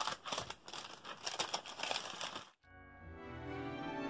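Rustling and light clicks of card and paper being handled on a tabletop for about two and a half seconds, cut off suddenly. Soft background music then fades in.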